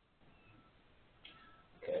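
Near silence: room tone, with a faint, brief high-pitched sound about a second in. A man starts speaking right at the end.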